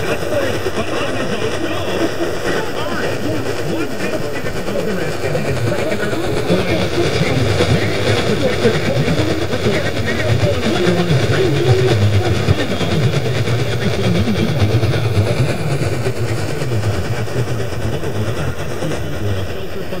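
GE Superadio's loudspeaker playing a weak long-distance AM broadcast on 1700 kHz: faint, garbled station talk buried in static and noise, the signal growing somewhat stronger in the middle.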